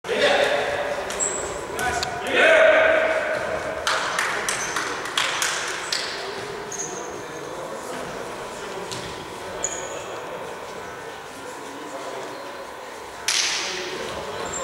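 Echoing indoor futsal hall: men's voices calling out, the loudest shout a few seconds in, with sharp knocks of the ball being kicked and bouncing on the court floor, a cluster of them in the middle and a loud one near the end. Brief faint high squeaks of sneakers on the court floor come now and then.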